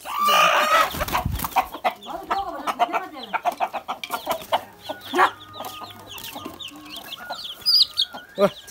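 Domestic chickens: a hen held in the hand calls out loudly in the first second, followed by clucking and short calls, with many short, high, repeated peeps from small chicks in the later seconds.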